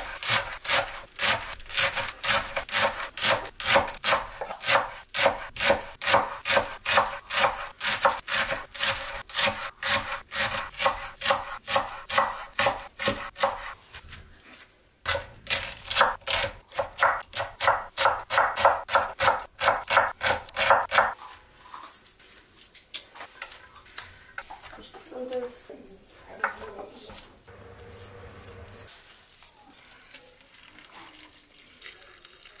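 Chef's knife chopping vegetables on a wooden cutting board: fast, even strokes, about four a second, with a short pause about fourteen seconds in. The chopping stops after about twenty-one seconds, giving way to quieter, scattered knocks.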